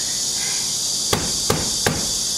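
Three sharp knocks on a front door by hand, evenly spaced about a third of a second apart in the second half, over a steady high hiss.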